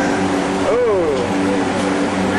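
A person whoops "woo" once, the pitch rising and falling, and laughs, over a steady loud hum and rushing noise.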